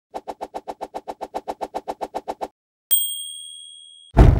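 Logo animation sound effect: a quick, even run of about seven ticks a second for two and a half seconds, then a short pause and a single high bell ding that rings on and fades.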